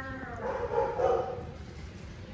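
Kitten mewing while it eats: the tail of a pitched mew, then a louder, rougher mew about half a second to a second and a half in.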